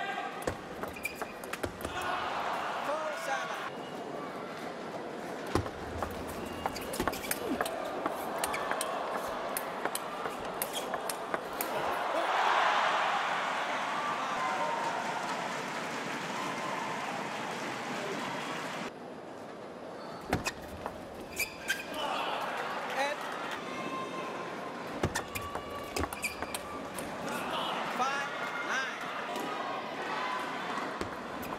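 Table tennis rallies: a celluloid ball clicking sharply off the bats and the table in quick exchanges, over the constant noise of an arena crowd shouting and cheering. The crowd swells louder about twelve seconds in, after a point is won.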